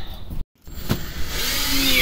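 Cordless drill starting up about a second and a half in and running as it drives a screw into wood. Before it, the sound drops out completely for a moment, followed by a single click.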